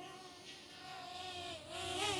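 DJI Flip quadcopter's propellers running as it hovers: a faint, steady hum whose pitch dips briefly about one and a half seconds in.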